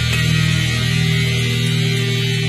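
Music: a distorted electric guitar chord held and droning steadily, with no drums or vocals.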